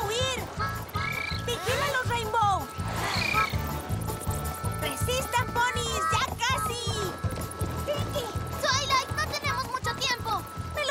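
Upbeat background music with a steady bass beat. Over it, a swarm of small cartoon creatures gives many short, high-pitched squeaky chirps.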